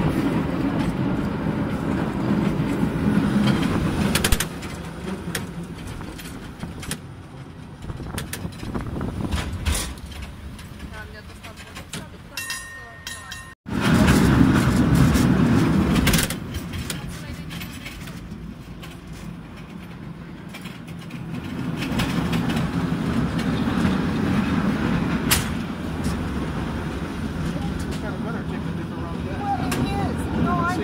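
San Francisco cable car in motion, heard from aboard the open car: a low rumble and rattle from the moving car on its rails, loud for a few seconds at a time and easing off in between.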